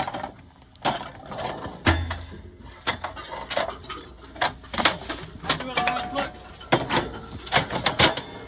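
A dozen or so irregular sharp knocks and clatters, with a low steady rumble that comes in about two seconds in.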